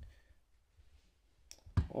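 A Logitech T630 Bluetooth mouse being set down on a desk: near silence, then two light clicks in quick succession about a second and a half in.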